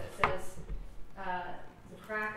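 Microphone being handled: one sharp knock about a quarter second in, then a brief bit of a person's voice about a second later.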